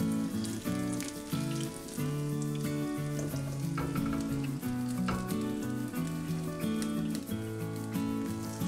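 Apple fritters frying in a pan of hot vegetable oil, the oil sizzling with many small crackles as they are flipped with a spatula. Background music with held notes plays along.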